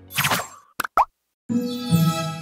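Channel outro jingle: a short burst of sound, then two quick pops, and about one and a half seconds in a bright musical chord that is held.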